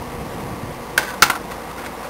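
Two sharp plastic clicks about a second in, a quarter second apart, with a fainter tick after: hands handling a clear plastic tub and the pieces being set into it.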